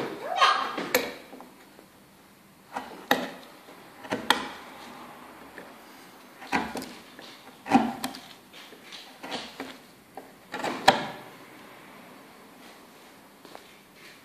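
Hand carving chisel cutting and scraping into soft wood pulp ornaments, a dozen or so short, irregular strokes and knocks, quieter in the last few seconds.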